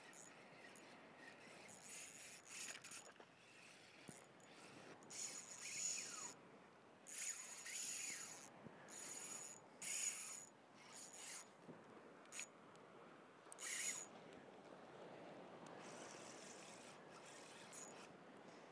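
Ultralight spinning reel whirring in short bursts of a second or two, its gears and drag working under load from a hooked ladyfish.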